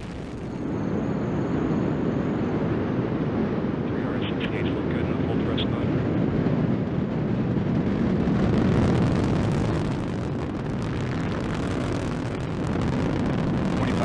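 A Delta IV Heavy rocket's three RS-68A first-stage engines during ascent. It is a loud, steady, low rumbling noise that swells up about half a second in and holds.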